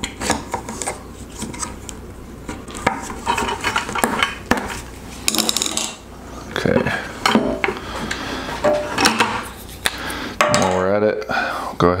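Hands handling small plastic pipe fittings and a roll of PTFE (Teflon) thread tape: irregular small clicks, taps and rustling as the tape is pulled and wrapped around a threaded fitting.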